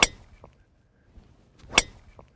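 A driver striking a teed golf ball: a sharp crack of impact at the start, and another just like it near the end.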